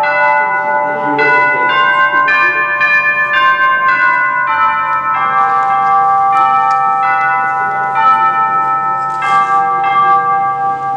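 Slow music of struck bell-like notes, a new note about every half second, each ringing on and overlapping the next.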